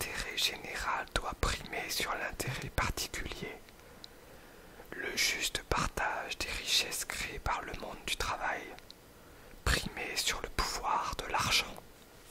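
Close, soft whispering of French speech, read aloud in three phrases with pauses of about a second between them.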